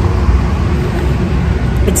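Steady low rumble of road traffic in a city street, with no pause in it.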